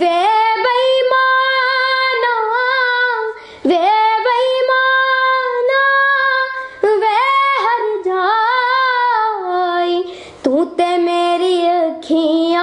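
A young girl singing a song unaccompanied, holding long notes with ornamented turns and slides in pitch, breaking off briefly for breath three times.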